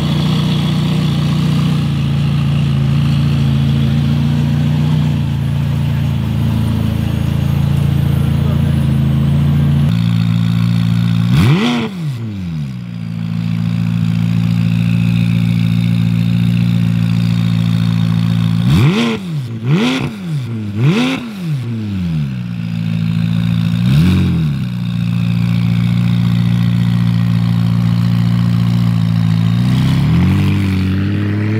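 McLaren 570S twin-turbo 3.8-litre V8 with optional sport exhaust, idling steadily, then blipped: one sharp rev a little over a third of the way in, three quick revs in a row past halfway, and one more shortly after.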